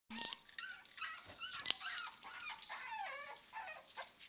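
Seven-week-old Boston terrier puppies making many short, high-pitched cries that slide up and down in pitch, one after another. A sharp click sounds about one and a half seconds in.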